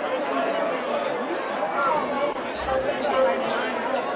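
Concert audience chattering: many voices talking over one another, no words standing out.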